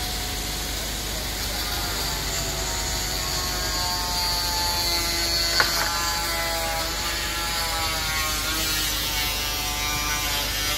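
Engine-driven machinery running steadily at an excavation, a low rumble under several tones that slowly drift in pitch, with one sharp click about halfway through.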